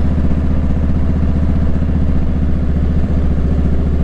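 Motorcycle engine running steadily, an even low pulsing that doesn't rise or fall.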